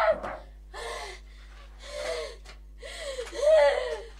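A girl's helpless laughter: gasping breaths about once a second, then a higher, pitched laugh that falls away near the end.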